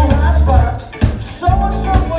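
A live band playing: a heavy bass line and drums with regular cymbal hits under a pitched melody line. The sound dips briefly just before the middle.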